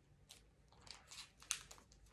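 Faint rustling and several short clicks and crinkles of hands handling headphone accessories: a charging cable and its packaging. The sharpest click comes about one and a half seconds in.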